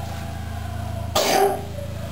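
A person coughs once, briefly, about a second in, over a steady low hum.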